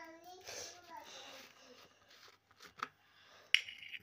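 Handling of a plastic bottle of Rooh Afza syrup, with a short soft girl's voice sound at the start and a sharp click about three and a half seconds in.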